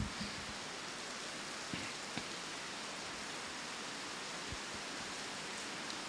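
A steady, even hiss with a few faint, soft knocks scattered through it.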